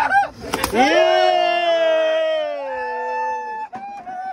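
A long, drawn-out wordless yell, held for about three seconds with its pitch sliding slowly down and a second voice joining near the end, from excited pier anglers whooping as a hooked shark is brought up. A few sharp knocks come just before it.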